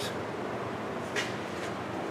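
Steady, quiet room noise in a shop, with a short faint hiss about a second in.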